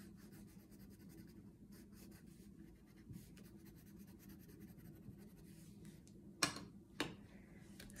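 Green wax crayon scribbling on paper, a faint quick scratching of short back-and-forth strokes as a small area is coloured in. Near the end, two soft knocks half a second apart.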